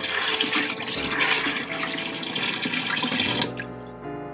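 Tap water running into a glass bowl of soaked soybeans while gloved hands swish the beans through the water to rinse them. The running water stops about three and a half seconds in.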